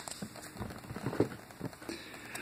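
Faint handling noise: irregular small clicks and rustles as things are picked up and moved about on a craft table.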